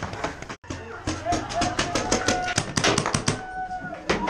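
Paintball fire: rapid, irregular sharp cracks of paintball markers shooting and balls striking bunkers, starting after a brief dropout about half a second in, with voices over it.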